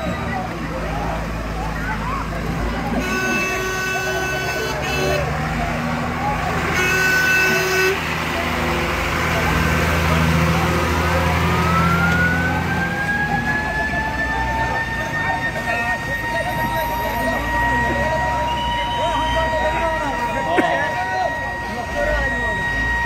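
Crowd voices over idling truck engines, with two vehicle horn blasts about three and seven seconds in, the first about two seconds long and the second shorter. From about eleven seconds a vehicle siren winds up in pitch and then holds a steady wail.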